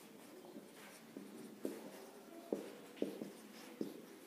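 A marker pen writing on a white board: a series of faint, short strokes and taps as the words are written.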